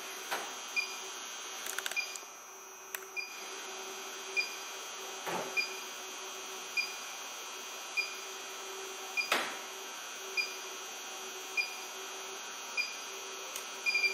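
ALL-TEST Pro 7 motor circuit analyzer beeping steadily, a short high beep a little more than once a second, about a dozen in all, pacing a slow hand rotation of the motor shaft at four beeps per revolution for the dynamic rotor test. A few soft knocks come from the handle on the turning shaft, over a faint steady hum.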